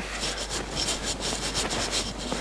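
Irregular rubbing and rustling noise with faint ticks scattered through it.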